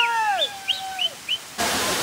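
A few short, quick bird chirps over a bending pitched sound. About one and a half seconds in, it cuts suddenly to the steady rushing of a waterfall cascading down a rock face.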